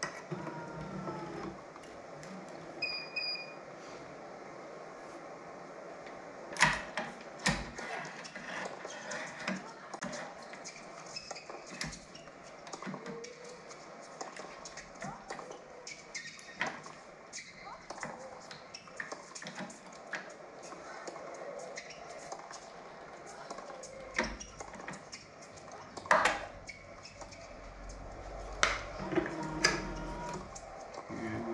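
Tennis racket being worked on a stringing machine while the strings are tied off: scattered sharp clicks and knocks from clamps, tools and string handling, a few of them loud, over faint commentary from a TV tennis broadcast.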